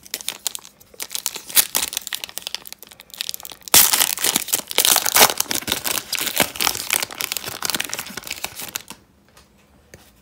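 Foil wrapper of a Panini Contenders football card pack being crinkled and torn open by hand, a dense crackling that gets much louder about four seconds in and stops about nine seconds in.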